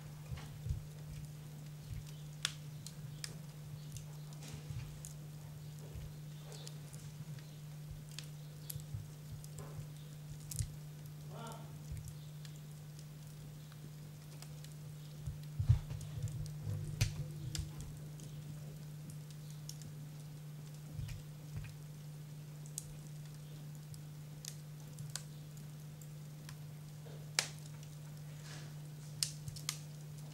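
A steady low electrical-sounding hum with scattered small clicks and knocks, one louder knock about halfway through.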